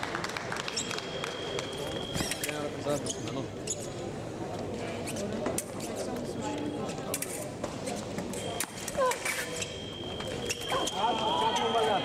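Fencers' footwork on the piste, with quick thumps of feet and sharp clicks, over a busy sports-hall background of voices. A steady high electronic tone from a scoring machine sounds on and off several times, the longest near the end as a touch is scored.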